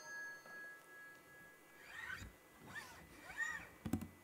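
The ring of a small bell dies away, followed by three short faint cries, each rising then falling in pitch, and a sharp click near the end.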